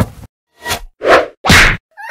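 Cartoon fight sound effects: a short click, then three quick swooshing hits, the last two loud, as a wooden club is swung and strikes.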